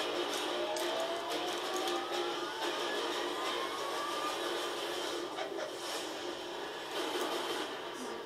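Film trailer soundtrack played over speakers: dramatic score with a tone rising slowly in pitch over about four seconds, a steady low drone, and several sharp hits.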